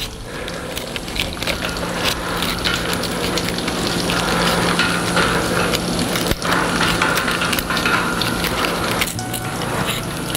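A knife shaving and splitting cane strips by hand: a continuous dry rasping crackle, swelling over the first few seconds, over a steady low hum.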